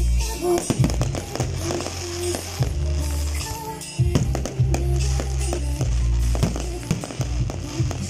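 Aerial firework shells bursting in quick, irregular bangs and crackles, over loud music with a heavy bass.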